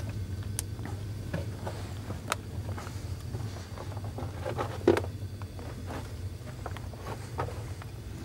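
Footsteps and scuffs of a person picking their way back over loose rubble in a tunnel, with scattered small clicks and knocks and one louder knock about five seconds in, over a steady low hum.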